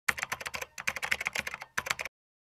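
Rapid typing on a computer keyboard: a fast, uneven run of key clicks at about ten a second, with two brief pauses.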